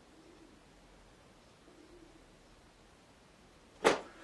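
Quiet room tone, then a single sharp knock near the end, short and loud, with a brief ringing tail.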